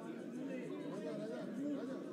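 Indistinct chatter of many voices talking at once, with no single voice standing out.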